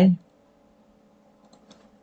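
A few faint, short computer clicks about a second and a half in, after the end of a man's speech.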